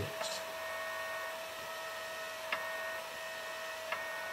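Small cooling fan of a Fostex D1624 recorder running while pressed onto the metal hard-drive housing: a steady hum with a clear whining tone and fainter higher tones. The fan's vibration is coupling into the drive box, which resonates like a sound box. Two small clicks come about halfway in and near the end.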